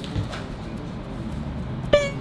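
A single short horn-like toot near the end, over a faint low background hum.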